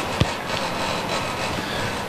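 Steady hiss of hall room tone picked up through an open handheld microphone, with a couple of light clicks near the start.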